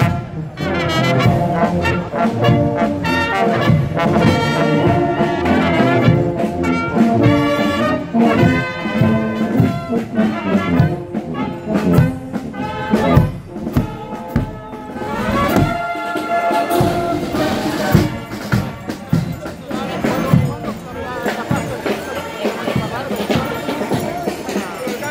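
Bavarian brass band playing a march as it marches past: tubas, trumpets and trombones with a clarinet, and hand cymbals keeping the beat.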